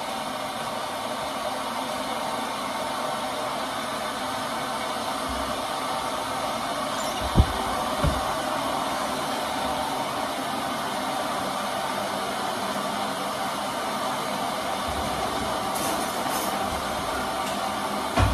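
A steady whooshing hiss from a running appliance holds at an even level throughout. Two low knocks come about seven and eight seconds in.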